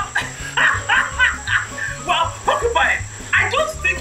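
A cartoon jackal's long run of laughter, 'ha ha ha' bursts about three or four a second, over background music with a low stepping bass line.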